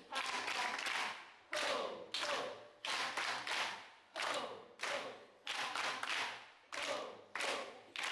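A roomful of people clapping together in short rhythmic bursts, about one burst a second, with voices joining in during the claps.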